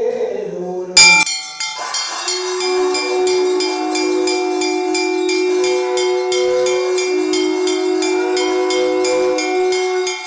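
Temple aarti sounds: a loud strike about a second in, then bells ringing rapidly and continuously over a long, steady, horn-like held tone.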